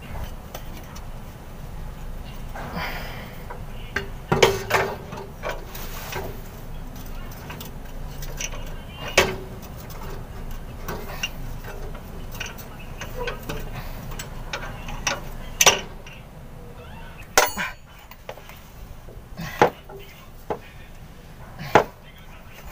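Irregular sharp metallic clinks and taps of a wrench and steel air-line fittings as a replacement air dryer is fitted under a truck chassis, over a steady low background noise.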